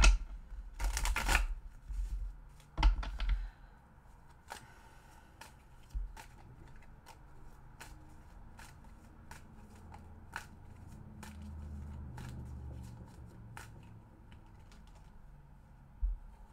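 A deck of tarot cards being shuffled by hand. There is a loud riffle in the first second and a half and another burst near three seconds, then quieter clicks and taps of cards being handled and drawn.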